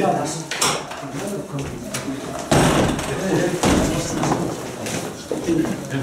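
Commotion of several voices at once, with clicks and clatter as the glass door of a courtroom dock is opened and people crowd through it. About two and a half seconds in, a rush of rustling noise lasts roughly a second.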